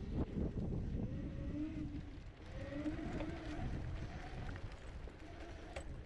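Kaabo Mantis 10 Pro dual-motor electric scooter riding over rough grass and dirt, with ride rumble and wind buffeting on the microphone and a faint wavering tone over it.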